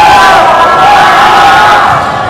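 Spectators in a school gym cheering and shouting, with several long drawn-out voices held on a steady pitch overlapping.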